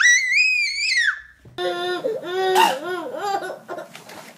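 A toddler's high-pitched scream-cry, about a second long, rising and then falling away. After a cut, a baby laughing in a string of short rising-and-falling laughs.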